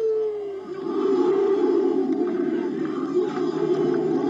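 Many voices chanting or singing together in a dense, steady drone, swelling in about a second in as a single held note before it fades and drops slightly in pitch.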